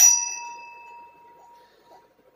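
A small metal bell struck once, ringing out with a clear tone that dies away over about a second and a half.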